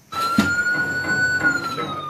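Ambulance siren in a slow wail: the pitch rises gently, then falls, over a low rumble.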